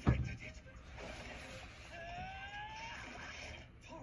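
Quiet anime soundtrack playing back: a soft hiss with one thin tone rising slowly for about a second, starting about two seconds in.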